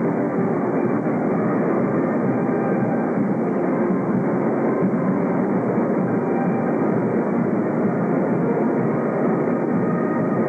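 Marching band playing, brass and drums blurred into a dense, steady wash in a reverberant gymnasium. The sound is dull and muffled, with no high end, as on an old videotape.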